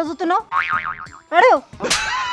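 Cartoon-style comedy sound effects: a warbling wobble in pitch, then a short falling boing-like swoop, and a sharp hit just before the end.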